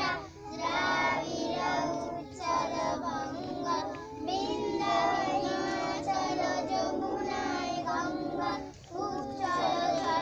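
A group of children singing together, in sung phrases broken by brief pauses for breath.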